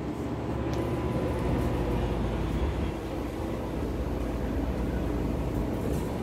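Passenger elevator car travelling upward, heard from inside the cab: a steady low rumble and hum of the ride.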